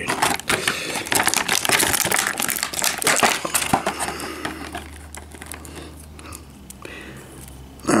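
Clear plastic toy packaging being crinkled and handled by hand: a dense run of small crackles and clicks, busiest over the first half and fainter after.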